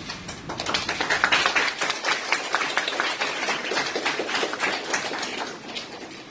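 Audience applauding: many hand claps. It swells within the first second and dies away near the end.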